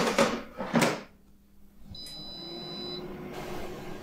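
Tefal Easy Fry hot-air fryer: its basket drawer is slid back in and knocks shut, then the fryer gives a high beep of about a second as cooking resumes. After the beep its fan starts up with a steady whir.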